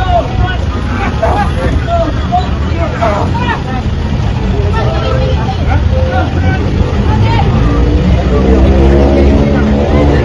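Several people talking and calling out at once in short, overlapping bursts, over a steady low vehicle rumble. From about eight seconds in, a droning tone joins and slowly rises in pitch.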